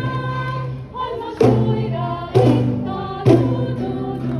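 A choir of schoolchildren singing together with an instrumental accompaniment and a steady bass line. From about halfway in, strong accented chords land roughly once a second.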